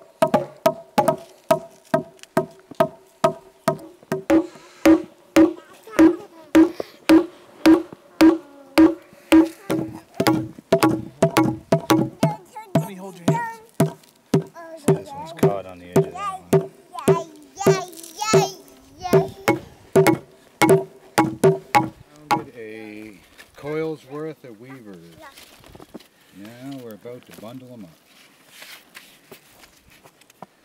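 Blows pounding a green ash log along its length, about one and a half a second, with a ringing tone under them. The pounding crushes the wood between the growth rings so they loosen and lift off as basket splints. The blows stop a little over twenty seconds in, and faint voices follow.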